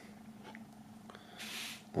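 Quiet handling of a CD and its plastic digipak tray: a faint click about half a second in, then a short, soft scraping hiss, over a steady low hum.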